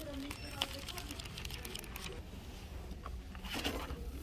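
Paper pages of a spiral notebook being flipped, a run of quick papery flicks in the first two seconds, then a louder rustle of paper near the end, over a steady low store hum.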